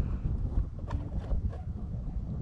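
Low, uneven wind rumble on the microphone with a few faint knocks.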